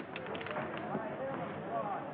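Indistinct murmur of several voices in the background, with a few light taps in the first second.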